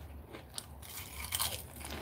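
Crunching of Lay's potato chips being bitten and chewed: quiet at first, with crisp crunches starting a little over a second in.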